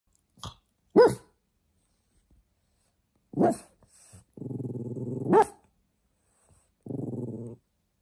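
Blue French bulldog puppy barking for attention: four short, high barks, the second, about a second in, the loudest. Between them come two low, drawn-out growls, one of them about a second long.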